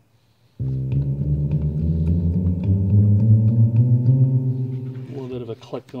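Krueger String Bass, an analog bass synthesizer, sounding through a guitar amplifier: a low bass tone starts suddenly about half a second in, moves through a few notes, and then dies away slowly on its sustain.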